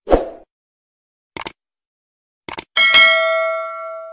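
Sound effects of a subscribe-button animation: a short thud at the start, a quick double click about a second and a half in, another double click about a second later, then a bright bell ding that rings out and slowly fades.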